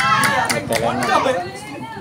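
Excited high-pitched voices calling out and chattering as players gather to celebrate a won point, with a couple of sharp impacts in the first half-second.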